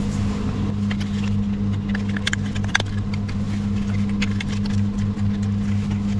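Plastic model kit parts clicking and rattling as they are handled and fitted together: a scattering of small, sharp clicks at irregular intervals over a steady low hum.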